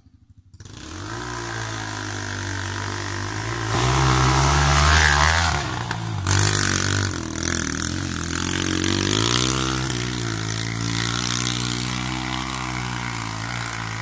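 Yamaha XT125 single-cylinder four-stroke dirt bike engine revving under load while climbing a steep hill. It comes in about half a second in and rises in pitch and loudness around four seconds in, dips, then rises again near ten seconds.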